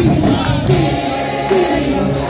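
Live band music with many voices singing together like a choir, the audience joining in.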